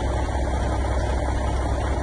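A motor vehicle engine idling steadily: an even low rumble under a steady wash of outdoor noise.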